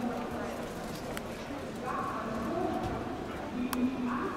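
Indistinct chatter of people talking, with a sharp click near the end.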